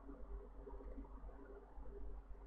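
Quiet room tone with a faint steady low hum; no distinct sound.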